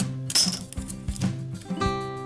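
A single sharp metallic clink with a brief high ring about a third of a second in, as a snap-off utility knife is set down on a steel ruler, over background acoustic guitar music.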